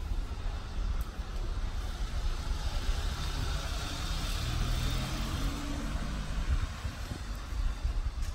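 Street traffic: a car passes, its tyre hiss and engine swelling and fading in the middle, over a steady low rumble.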